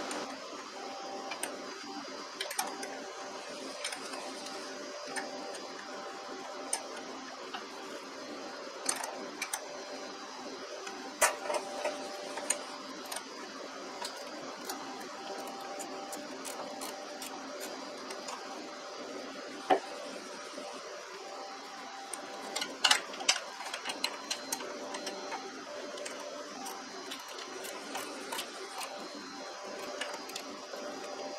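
Socket ratchet clicking in scattered short runs as loose bolts on a zero-turn mower's steering linkage are tightened, over a steady hum.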